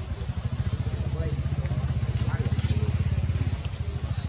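A motor vehicle engine running with a low, rapid, even pulse. It grows louder about half a second in and eases off near the end, as if passing close by.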